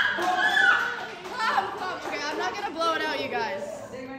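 Several people talking over each other in a lively chatter.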